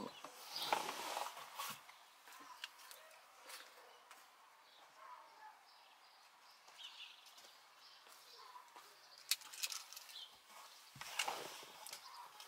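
Faint rustling and handling noises with a few light clicks and knocks, the clearest about nine and eleven seconds in, as a person moves in and around a parked car with its door open.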